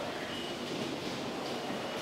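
PET bottle blow-moulding machine running: a steady, even mechanical noise with no distinct strokes.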